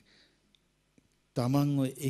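A brief pause in a man's speech into a microphone, with a faint breath and two small clicks, then he resumes speaking about a second and a half in.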